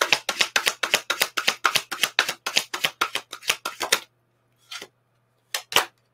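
A deck of tarot cards shuffled by hand: a fast, even run of card slaps, about six a second, that stops about four seconds in. Two single card snaps follow near the end.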